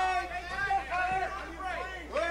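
Cageside voices, several people talking and calling out over one another during an amateur MMA bout.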